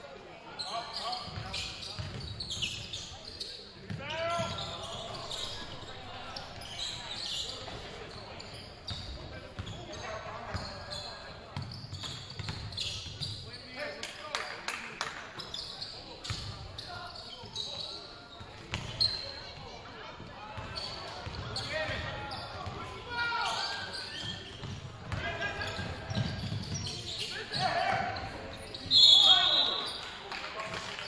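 Basketball dribbling and bouncing on a hardwood gym floor, with players' and spectators' shouts echoing in the large hall. Near the end a referee's whistle blows, short and loud, stopping play.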